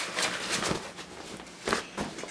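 Camping gear being handled: rustling with a few light knocks and clicks as items are moved about, and one sharper knock near the end.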